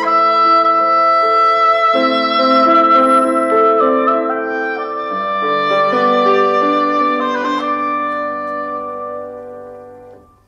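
Live instrumental music: a clarinet playing a slow melody over held chords with piano and ensemble, the sound dying away over the last few seconds.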